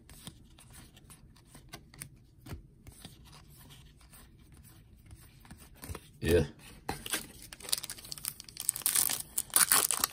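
Baseball cards being flicked through with faint soft clicks, then a foil trading-card pack wrapper crinkling and tearing open, building up over the last three seconds.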